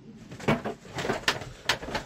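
A few short knocks and bumps as a man gets up from a cabin table and moves about in a small boat.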